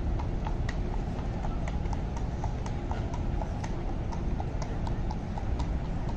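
A carriage horse's hooves clip-clopping on the paved road at a walk, about three steps a second, as a horse-drawn carriage passes, over a steady low background rumble.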